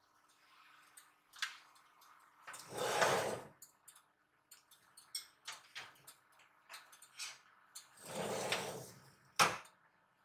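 A wire oven rack and a ceramic baking dish being handled at an open oven. Two longer sliding scrapes come about five seconds apart, with light clicks and knocks between them as the dish is set on the rack, and a sharp clack near the end.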